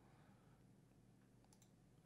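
Near silence: room tone, with a faint computer mouse click near the end.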